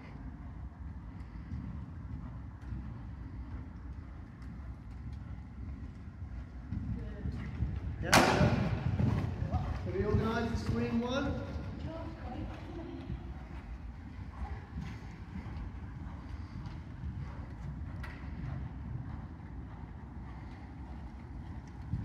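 Muffled hoofbeats of a horse cantering on a sand arena surface over a steady low rumble, with a sudden loud thump about eight seconds in and a faint voice soon after.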